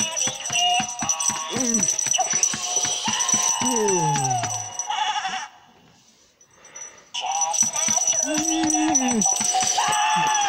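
Gemmy Jingle Jangle animated plush goat playing its electronic Christmas song, with a steady rattling beat and a bleating voice that slides down in pitch. The song cuts out for about a second and a half midway, then starts again.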